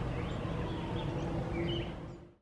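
Outdoor ambience: small birds chirping now and then over a steady low rumble, the chirps clustering near the end.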